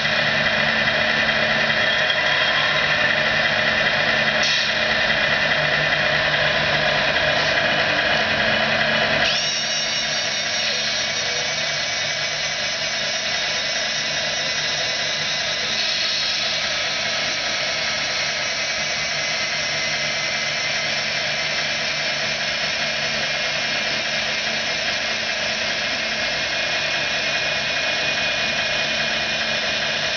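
Small electric motors of a radio-controlled rollback tow truck whining steadily as the model truck is winched up its tilted bed. About nine seconds in the sound drops a little and changes pitch, then runs on steadily.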